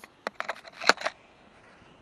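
Handling noise on a handheld camera: a quick run of sharp clicks and knocks as it bumps and rubs against clothing, the loudest about a second in, then only a faint hush.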